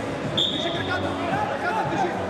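A whistle blown once: a single short, high, steady note lasting under a second, over voices and the hubbub of the hall.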